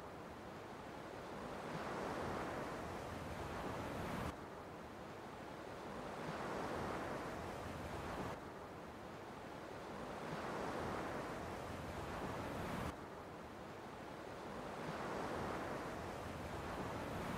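A steady rushing noise of the open air, wind-like, swelling and fading over a few seconds at a time. It drops off suddenly three times, about four, eight and thirteen seconds in.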